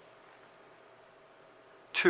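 Near silence: faint room tone with a steady low hum. Right at the end, a loud, quick sweep starts, falling steeply in pitch.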